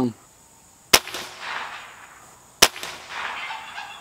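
.22 caliber PCP air rifle firing: two sharp shots about a second and a half apart, each followed by a short fading rush.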